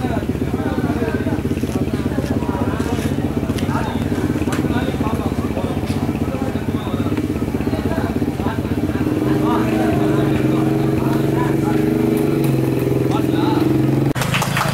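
An engine running steadily close by, its note growing stronger about nine seconds in, with voices talking in the background.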